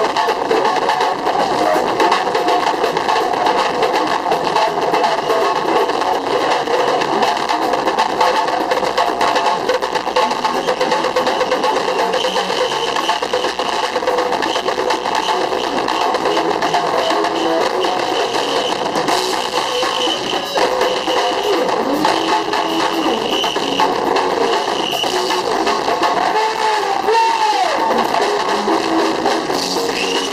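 Live band music with drums, playing steadily and loudly throughout, with a few sliding notes near the end.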